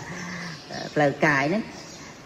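Speech only: a man talking into a microphone, one drawn-out syllable about a second in, with short pauses around it.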